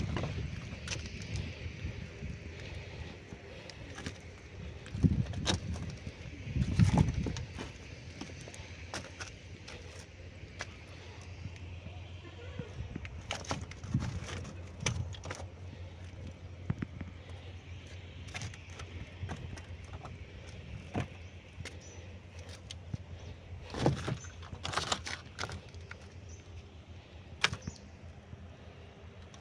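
Indistinct background voices over a steady low hum, with scattered clicks and a few louder bumps about five, seven and twenty-four seconds in.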